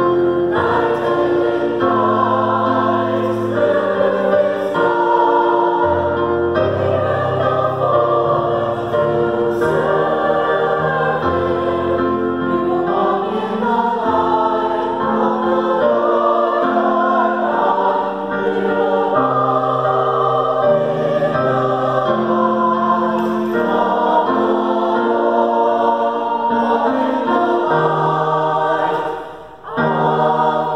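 Mixed-voice church choir singing an anthem with piano accompaniment, holding a full, sustained sound with a short break near the end before the voices come back in.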